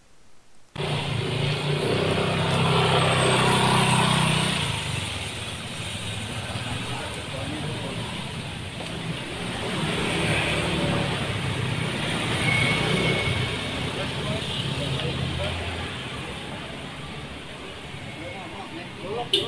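Street recording that cuts in suddenly about a second in: indistinct voices of people over running vehicle engines and traffic.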